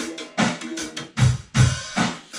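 A drum kit recorded with a single stereo pair of overhead microphones, played back over studio monitors: a basic beat of kick drum hits under cymbals, with an ambient, organic room sound.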